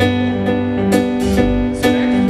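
Live band playing without vocals: electric guitars and keyboard holding sustained chords over a drum kit, with a drum or cymbal hit about every half second.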